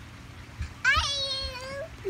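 A single high-pitched, drawn-out cry about a second long, sweeping up at the start and then holding a steady pitch, with a slight lift at the end.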